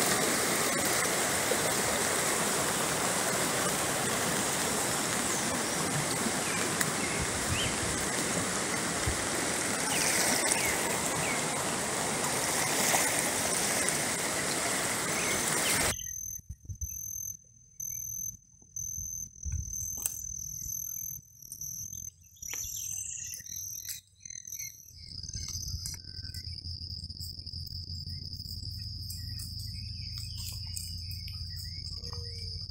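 Swollen, muddy river rushing fast over its bed: a loud, steady roar of water that cuts off suddenly about sixteen seconds in. After that come faint, steady high-pitched trills of crickets or other insects in a grassy field.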